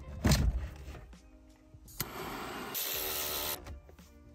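Background music, with a heavy thump just after the start, then a click about two seconds in and about a second and a half of hiss.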